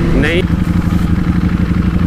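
Ducati Panigale V4S's V4 engine running steadily at low revs in third gear as the bike slows, heard from the rider's position over a wide rush of noise.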